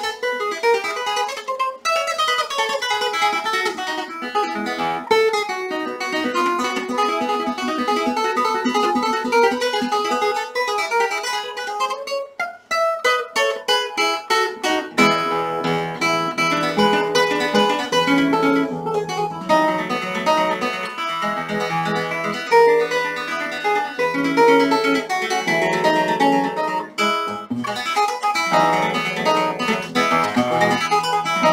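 Solo nylon-string classical guitar played fingerstyle: flowing single-note lines and chords, a quick run of rapid repeated notes a little before halfway, then a melody over a recurring low bass note.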